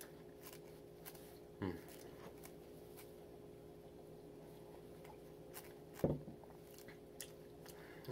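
A person quietly chewing a soft muffin, with faint mouth clicks, and two short throaty sounds, about a second and a half in and about six seconds in. A steady low hum runs underneath.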